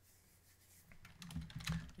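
Keystrokes on a computer keyboard: a quick run of a handful of key presses in the second half, after a nearly quiet first second.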